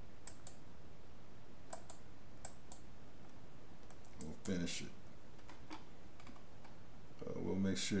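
Scattered computer mouse and keyboard clicks, spaced irregularly, over a low steady background hiss. A short vocal sound comes about halfway through, and speech starts near the end.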